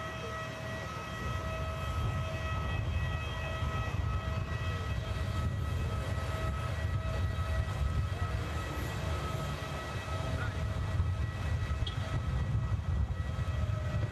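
Steady low vehicle-engine rumble with a high whine made of several level tones that fades out about halfway through.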